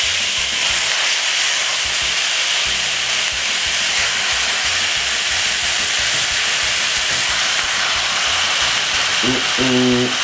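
Chicken pieces frying in hot oil with onion, garlic and curry powder in a pot: a steady sizzle.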